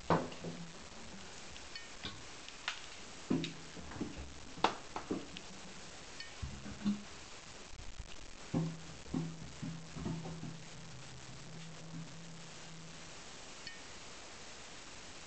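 A small ball knocking and rolling around inside a bathtub, each knock making the tub ring with a low hum; a long rolling hum in the second half.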